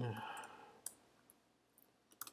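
A few isolated keystrokes on a laptop keyboard, with long quiet gaps between them, after a spoken word trails off at the start.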